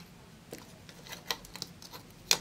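A scatter of light plastic clicks and taps, about six, the sharpest a little past the middle, from hands handling thin wires and a small plastic cooling fan.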